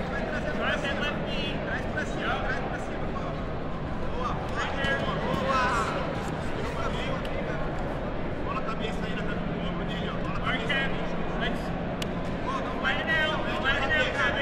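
Shouted coaching and calls from the sidelines over the background murmur of a crowd in a large hall, with a steady low hum underneath.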